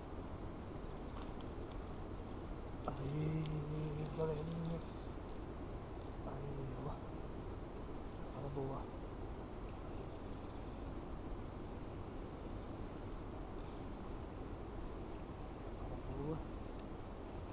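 A man's brief wordless hums, three short low ones, the first about three seconds in and the loudest, over steady outdoor background noise with a few faint clicks.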